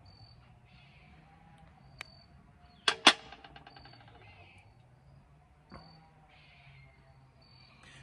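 Two sharp clicks close together about three seconds in, followed by a brief rattle of fast ticks: the green leader line being snipped to length with a cutting tool. Weaker single clicks come before and after.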